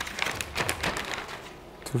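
Metal spoon clicking and scraping as cooked corn kernels are spooned into a plastic vacuum-sealer bag: a quick run of light taps that thins out after about a second.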